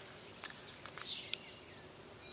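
Quiet woodland background with a steady high-pitched insect drone, and a few faint ticks from footsteps on the leaf-covered trail.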